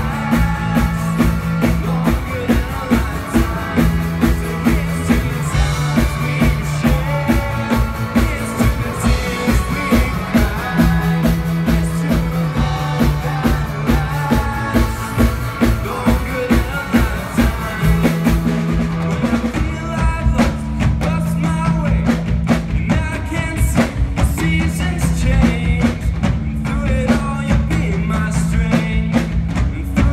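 Live band playing a pop-rock song. Electric guitar and drum kit keep a steady beat over a repeating bass line, and a group of singers on microphones sings over them.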